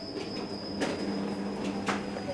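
Street ambience: a steady low hum with two short, light clicks about a second apart.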